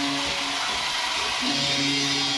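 Floorball-arena ambience: a steady wash of crowd and hall noise under a low, steady held tone that drops out for about a second in the middle.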